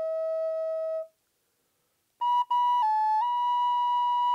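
3D-printed microtonal flute played solo. A held note fades out just after a second in; after a short pause a new, higher phrase starts, stops briefly, dips to a lower note and returns to the higher one.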